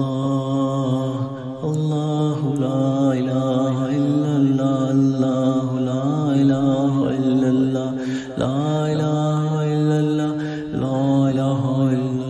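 A devotional zikr chant: a voice repeating "Allah" in long held notes, a new phrase starting a few times.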